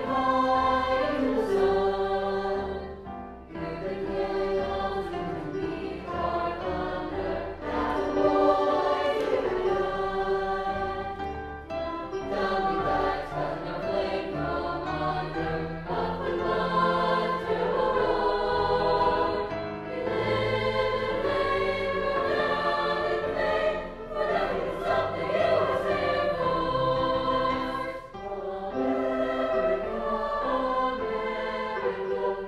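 Choir singing in sustained phrases, with short breaks between phrases.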